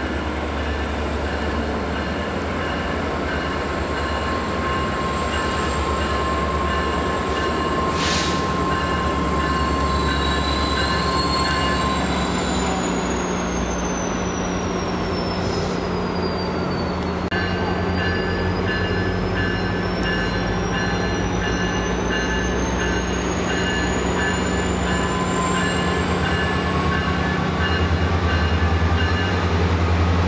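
Metrolink diesel locomotive running as its train approaches slowly, a steady low engine hum that grows louder toward the end. Thin high tones ride over it, one of them rising in pitch over the last several seconds.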